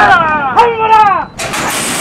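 Excited shouting: drawn-out yells falling in pitch as racehorses break from the starting gate.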